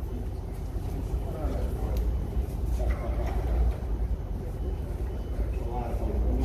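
Indistinct voices of a small group chatting as they gather, over a steady low rumble.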